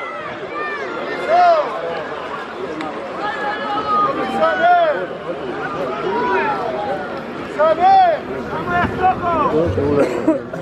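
Crowd of spectators shouting and calling out over one another, many voices overlapping, with louder individual shouts every few seconds.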